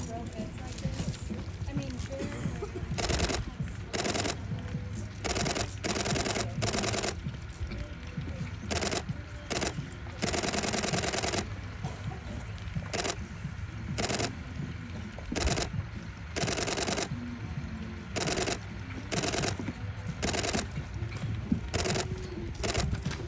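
Wind buffeting a phone microphone: a steady low rumble broken by many irregular bursts of loud crackling, each lasting up to about a second.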